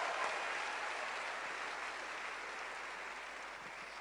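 Audience applause: a steady patter of clapping that slowly fades away.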